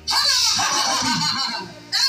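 A person's long, loud cry, wavering and falling in pitch, breaking off about a second and a half in; another cry starts at the very end.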